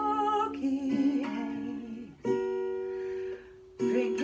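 A woman singing a held, wavering note over strummed acoustic guitar. About halfway through, a guitar chord is struck and left to ring, then damped. A new strum starts just before the end.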